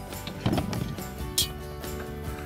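Background music, with a dull clunk about half a second in as a cast iron Dutch oven is set down on its wire trivet stand, and a short hiss a little later.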